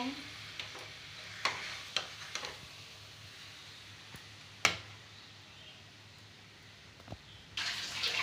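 A metal spoon scraping and knocking against a steel kadhai and plate as thick besan paste is scooped out: a few scattered clinks, the loudest about halfway through. A steady rushing noise starts near the end.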